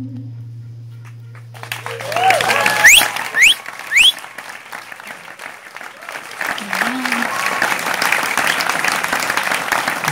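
Audience applauding and cheering at the end of a song, starting about a second and a half in as the last held note of the music dies away. Three sharp rising whistles come from the crowd about three to four seconds in.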